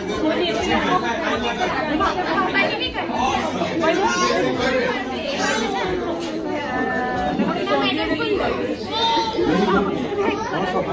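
Several people talking over one another in lively group conversation.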